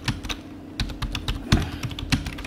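Computer keyboard being typed on, a quick, uneven run of keystroke clicks as a search query is entered.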